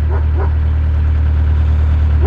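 A narrowboat's diesel engine running steadily under way, a low, even drone with a regular throb.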